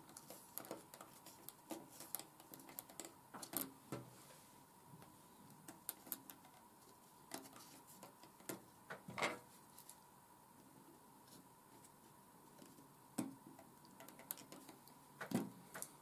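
Faint, scattered light clicks and taps of fingers handling and pressing thin laser-cut card railing pieces onto a model's card deck, with a few slightly louder taps now and then, over a faint steady thin hum.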